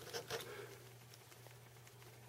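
Quiet handling sounds: a few faint soft ticks in the first half second as the wires and a lit lighter are held over the joint, then quiet room tone with a low steady hum.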